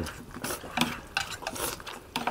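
Rice noodles being slurped and eaten fast, with chopsticks and a spoon clicking against metal plates in irregular short strokes, several a second.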